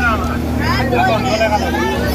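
Several people talking and calling out over one another, over a steady low engine drone.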